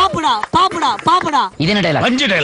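A young man speaking in short, rapid syllables into a handheld microphone, acting out a film dialogue. About a second and a half in, a different man's voice takes over.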